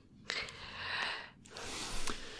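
Two soft breaths close to a microphone, the second starting about a second and a half in, with moments of dead silence between them.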